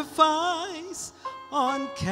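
A woman singing solo into a microphone, her voice held in short phrases with a wide vibrato and a brief break about a second in.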